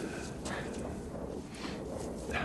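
Low, steady outdoor film ambience with faint scuffling as two men grapple on muddy ground and one hauls the other to his feet.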